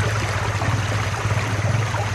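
Stream water running steadily, an even rushing wash with no breaks.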